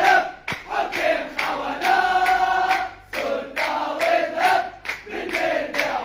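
A crowd of Espérance de Tunis football supporters chanting in unison: a terrace song for Palestine against the Arab rulers. It is sung in phrases with short gaps between them.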